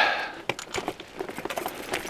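Mountain bike rolling fast down a loose gravel track: tyres crunching over stones and the bike rattling in quick, irregular clicks and knocks, after a short rush of noise at the start.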